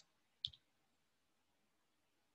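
Near silence broken by a single short click about half a second in: a computer mouse button clicked to advance a presentation slide.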